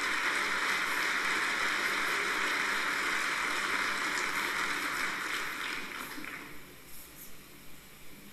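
Audience applauding, dying away about three-quarters of the way through.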